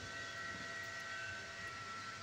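Faint steady background hum with a few thin, steady high-pitched whining tones running underneath, unchanging throughout.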